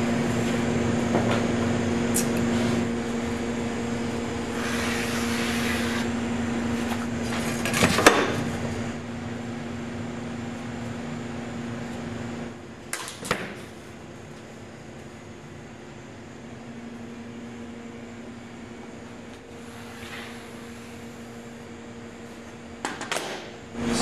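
A steady mechanical hum of shop equipment that drops in level about halfway through, with a couple of sharp knocks and a brief scrape from work at the marking table as a foam board core is marked out.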